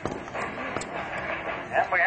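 Horses' hooves clip-clopping at a walk, a few knocks roughly every half second, with voices in the background. A man's voice over a loudspeaker comes in near the end.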